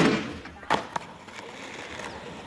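Skateboard tail sliding along the edge of a wooden box: a loud knock and short scrape, then two sharp clacks a little under a second in as the board comes off and lands, followed by the wheels rolling on concrete.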